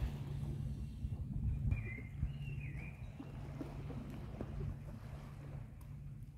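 Wind on the microphone with small waves lapping against shore rocks, a steady low rumble. About two seconds in comes a brief high gliding call.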